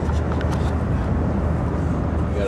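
Road noise inside a moving car's cabin: a steady low rumble of engine and tyres on the highway.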